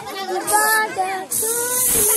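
Children singing in held notes, with two short hisses of party snow spray cans, the second near the end.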